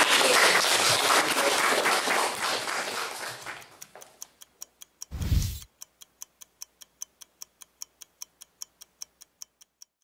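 A room of people applauding, dying away over about four seconds. Then a short low boom about five seconds in and a ticking-clock sound effect, about four ticks a second, under an animated logo.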